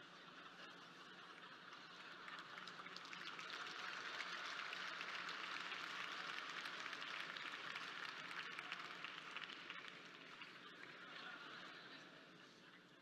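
Audience applauding, swelling over a few seconds, peaking in the middle and fading away.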